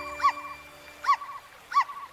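A small cartoon puppy giving three short, high yips, each rising then falling in pitch, about three-quarters of a second apart, while the last notes of a music cue die away near the start.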